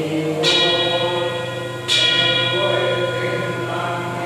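A bell struck twice, about a second and a half apart, each stroke ringing on and slowly fading, over steady group chanting.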